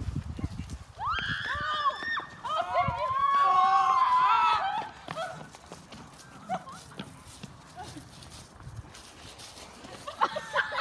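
A person screaming in high-pitched, wavering shrieks for about four seconds, starting about a second in, followed by quieter running footsteps.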